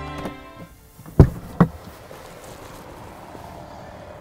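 The rear-hinged driver's door of a Rolls-Royce Phantom Coupé being unlatched and opened: two sharp knocks about a second in, half a second apart, the first the louder, then quiet outdoor background.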